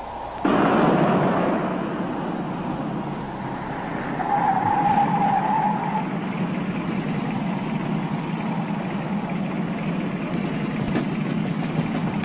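Motor vehicle running, starting suddenly about half a second in and settling into a steady hum, with a brief higher tone about five seconds in. Quick ticks begin near the end.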